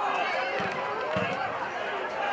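Overlapping voices of players and spectators calling and chattering at an outdoor lacrosse game, with two dull thumps about halfway through.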